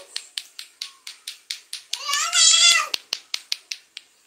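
A baby's high, wavering squeal lasting nearly a second, about two seconds in, over rapid, even clacking of about five clicks a second that stops near the end.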